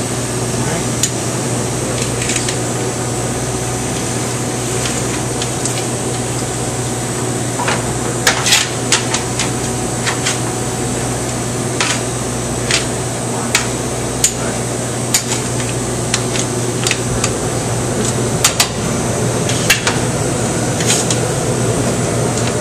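Metal tongs clinking against an aluminium pasta strainer and pots as linguine is lifted out of boiling water, a scattered series of sharp clinks starting about a third of the way in. Under them runs a steady kitchen ventilation hum.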